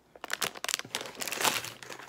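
Plastic snack wrappers crinkling as they are handled, in irregular bursts starting a moment in.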